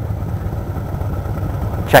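Motorcycle engine idling, a steady low pulsing rumble.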